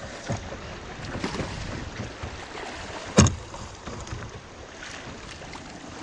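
Shallow river rapids rushing and splashing around a kayak as it runs through a riffle, with a sharp knock about halfway through and a few fainter knocks.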